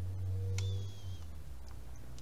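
Steady low electrical hum under the room tone. About half a second in there is a faint click, followed by a brief, thin, high tone that dips slightly.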